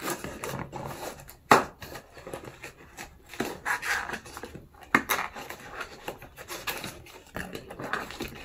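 Long acrylic fingernails tapping and scratching on a cardboard box while its end flap is pried open, with two sharp knocks about one and a half and five seconds in.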